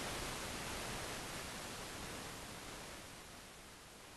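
Steady hiss of room tone and recording noise with no distinct event, slowly fading in level.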